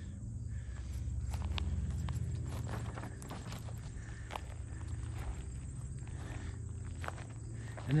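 Footsteps walking through grass and dry leaves, with irregular soft crunches and twig snaps, over a steady low hum.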